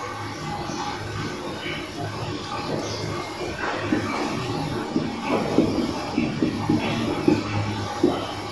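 Marker pen writing on a whiteboard: a run of short, irregular scratching strokes that grows louder over the second half, over a steady low hum.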